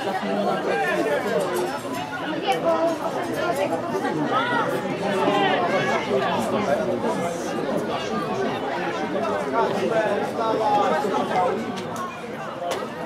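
Chatter of several people talking over one another, close by, with no single voice standing out.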